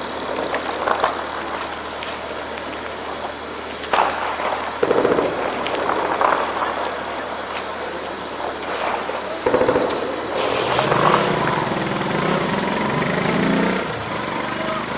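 Shelling and gunfire echoing across a town. There are scattered sharp cracks, a loud bang about four seconds in, and deep booms about five and nine and a half seconds in. In the last few seconds a steady rushing sound holds.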